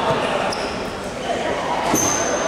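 A basketball bouncing on a wooden sports-hall floor, echoing in a large hall under background voices, with a few short high squeaks.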